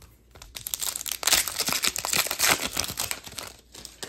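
A trading card pack wrapper being torn open and pulled off the cards, crinkling densely from about half a second in until just before the end.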